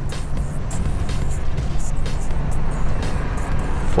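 2004 Ford F-250 Super Duty pickup idling, heard from inside the cab as a steady low hum.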